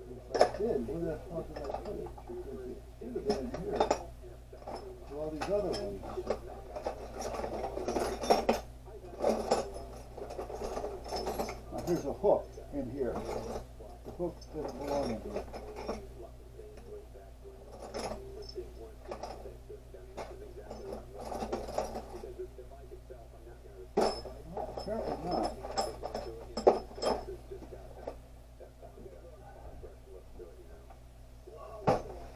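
Metal U-bolts and hardware clinking and rattling in a plastic container as they are rummaged through by hand, in irregular bursts with sharp clicks, over a steady low hum.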